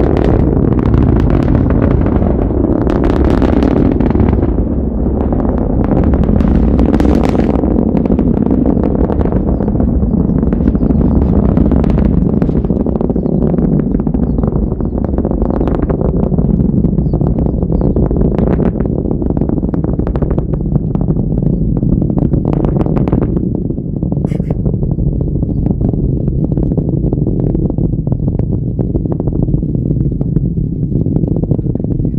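A Falcon 9 first stage's nine Merlin engines heard from miles away: a loud, steady deep rumble broken by crackles now and then.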